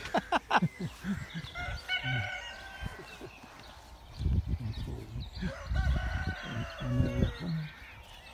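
A rooster crowing: one long call starting a little over a second in, with a low rumbling later on.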